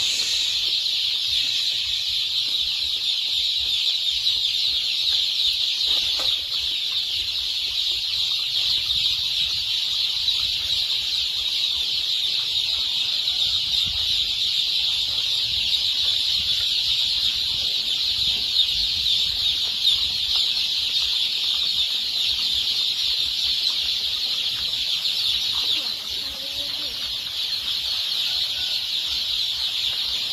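Hundreds of young native (village-breed) chicks peeping all at once, a dense, continuous high-pitched chorus.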